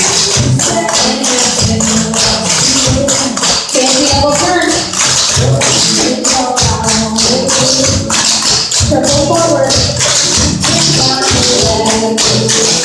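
A song with a singing voice plays over the rapid, rhythmic clicking of many dancers' clogging taps striking a wooden floor in step.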